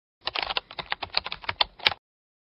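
Computer keyboard typing: a quick run of about fifteen key clicks, the last one the loudest.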